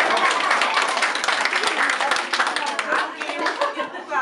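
Young children clapping together in a lively round of applause, with their excited voices mixed in. The clapping thins out near the end.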